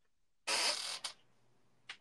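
A short burst of breath noise, about half a second long, from a person on a video call, followed by two faint clicks.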